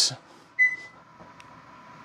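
Chevy Bolt EV giving one short beep about half a second in, its signal that it has accepted the charger connection and begun charging. A faint click follows a little later.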